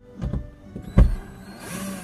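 Knocks from a cordless drill being set against a wall-mounted light fixture, with one sharp knock about a second in. Near the end comes a short whir of the drill driving a screw to fasten the light down.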